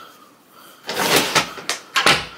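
An interior door being pushed shut, ending in a sharp click as its magnetic latch catches; the latch now closes and locks properly after a fix.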